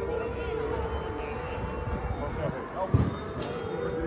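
City street ambience: unclear voices of passers-by talking over a steady background of traffic and street noise, with one short thump about three seconds in.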